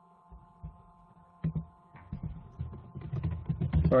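Soft thumps and clicks of someone handling things at a computer desk, over a faint steady whine. The clicks and knocks come faster and louder over the last couple of seconds, as the speaker deals with a technical problem in the call.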